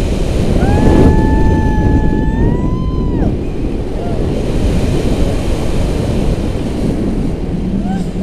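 Strong wind buffeting the camera microphone during a tandem paraglider flight. About half a second in, a person lets out one long held cry, about two and a half seconds long, that rises in pitch at the end, with a few short vocal sounds later.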